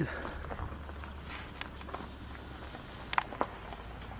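Quiet outdoor background with a steady low rumble and scattered faint clicks and taps; the loudest are two sharp clicks about three seconds in.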